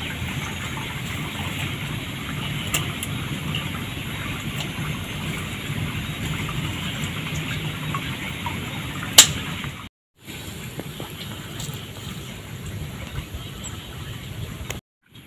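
Steady rushing outdoor noise, with a single sharp click about nine seconds in and a brief cutout just before ten seconds.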